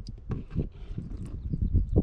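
Water poured slowly from a plastic pitcher onto a dry brick of compressed coconut coir in a plastic tub, landing as a string of irregular soft splashes and patters as the brick starts to soak it up.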